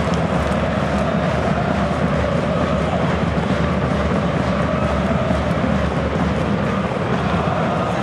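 Football stadium crowd noise: a steady din of many voices, with faint wavering tones of fans chanting together.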